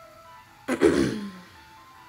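A person clearing their throat once, about two-thirds of a second in, a short rough sound lasting under a second, over soft background music.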